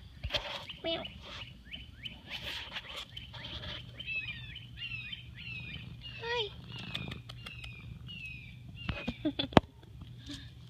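A bird singing a series of short, down-slurred whistled notes, about two a second, through the middle of the stretch. Near the end come a few sharp clicks and one loud knock.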